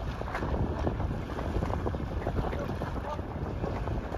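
Wind rumbling steadily on the microphone over the wash of choppy water.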